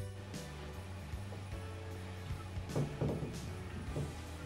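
Quiet background music with steady held low notes, just after a louder passage fades out.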